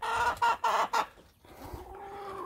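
Chickens clucking in a run: a few short clucks in the first second, then quieter.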